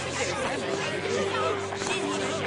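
Several voices talking and protesting over one another in a confused babble, with a steady low held tone coming in about half a second in.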